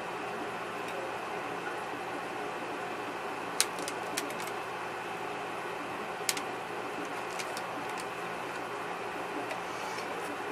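Steady background room hum with a few sharp, light clicks, the loudest about three and a half seconds and six seconds in, from small objects being handled while glitter is brushed on.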